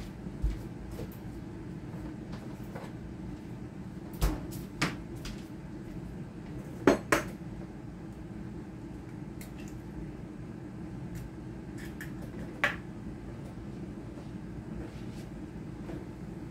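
Kitchen handling sounds over a steady low hum: a few scattered knocks and clinks. The loudest is a quick pair of sharp taps about seven seconds in, an egg being cracked on the rim of the mixing bowl.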